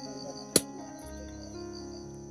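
A single sharp knock about half a second in as a machete blade strikes a spiny durian husk. Background music and a steady high insect buzz run underneath.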